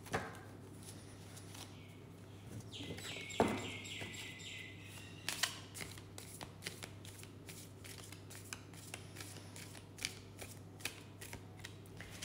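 Deck of tarot cards being shuffled by hand to clear it: a faint run of quick, irregular light card clicks and flicks through the second half, after a brief sustained higher-pitched sound about three seconds in.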